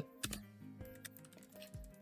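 Computer keyboard keys clicking faintly as a short command is typed, a few scattered keystrokes, over quiet background music.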